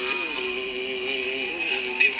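A man's chanting voice holding one long sung note, the drawn-out last syllable of a chanted Sanskrit verse. The pitch steps down slightly soon after the start and the note fades out near the end.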